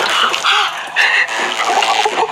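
A young man yelping and spluttering water as a shock collar jolts him mid-drink, with water splashing.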